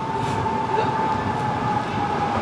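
A tram passing: a steady low rumble with a faint whine that slowly falls in pitch.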